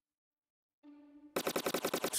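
Rapid automatic gunfire from a phone shooting game, a fast run of sharp shots starting about a second and a half in after near silence, with a brief faint tone just before it.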